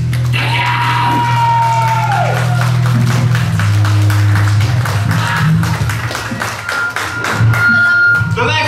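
Live heavy metal band playing: distorted guitar and bass hold low notes while the drums strike in quick succession. A high tone slides down and fades about two seconds in.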